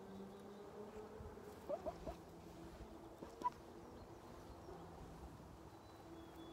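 A hen being petted gives three quick, soft rising chirps about two seconds in, over a faint steady hum; a single sharp click follows about three and a half seconds in.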